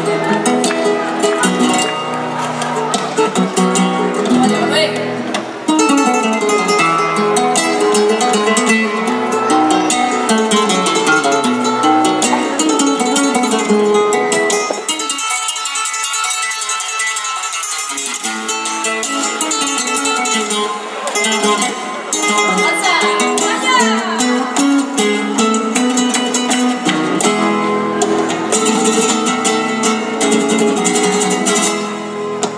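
Flamenco guitar playing an instrumental passage between sung verses of caracoles, with palmas (handclaps) keeping the compás. For a few seconds in the middle the bass drops away and only high notes sound, before the full accompaniment returns.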